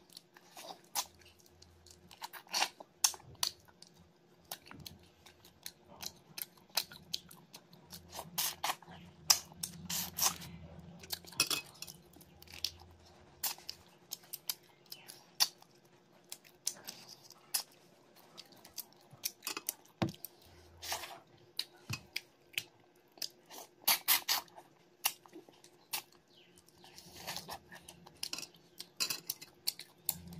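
A person chewing prawn curry and rice, with irregular mouth smacks and clicks throughout.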